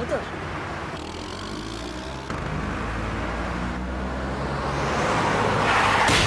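A motor vehicle's engine hums steadily in street traffic, growing louder. A rising rush of noise swells over it near the end, just before the scooter crash.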